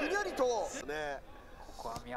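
Speech: a voice talking for about the first second, then quieter.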